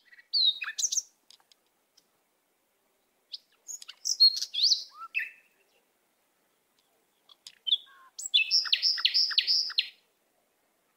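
Songbirds chirping in short, high phrases separated by stretches of quiet; near the end, a run of about five quick repeated notes, roughly three a second.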